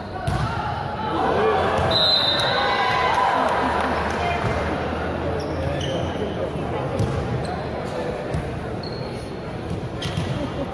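Spectators in a large indoor sports hall cheering and shouting at a volleyball match, loudest in the first few seconds and then easing off. A sharp ball impact comes right at the start, and scattered knocks follow.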